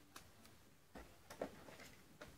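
Near silence with a few faint clicks and rustles of a trading card and plastic sleeve being handled, the loudest pair a little past halfway.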